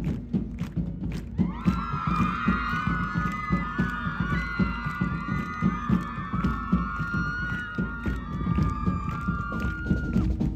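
A marching band's drums keep a steady beat while many high voices shout and cheer together, from about a second in until just before the end.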